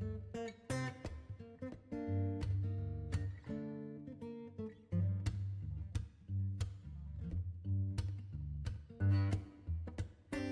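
Background music of an acoustic guitar, notes plucked and strummed in a steady run.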